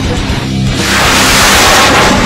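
Heavy rock music with a loud rushing whoosh that starts about a second in and lasts over a second: the rocket motor of a mine-clearing line charge launching and towing its line.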